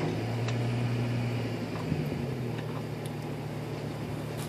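Vehicle engine idling steadily off to one side, its low hum shifting slightly in pitch about halfway through, with a few faint light clicks over it.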